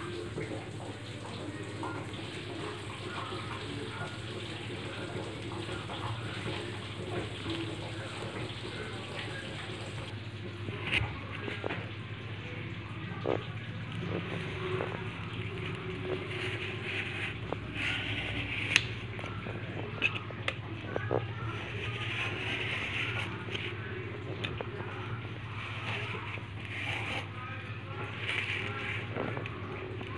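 Steady low hum and room noise, with scattered light scrapes and taps from about ten seconds in: a knife scoring soft barfi against a steel plate.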